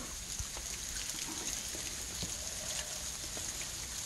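Quiet outdoor background: a faint steady hiss with a few soft ticks.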